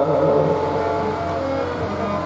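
Harmonium reeds holding steady sustained notes as the sung line ends at the start, the sound easing down a little.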